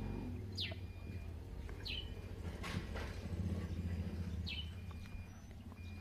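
A bird calling three times, each call a short chirp falling in pitch, over a low steady rumble.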